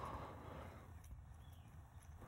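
Faint light clicks and scraping of a steel lock pick working the pin tumblers of a padlock held under tension.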